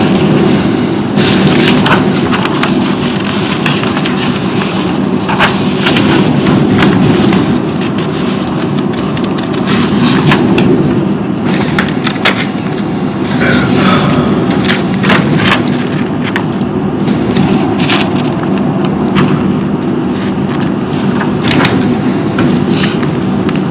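A steady, loud low rumble of room noise runs throughout, with papers rustling and small clicks and knocks scattered over it.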